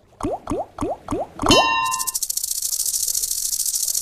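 Online slot game sound effects: five quick rising bloops, one for each reel stopping, a short chime, then a steady bright rattling shimmer.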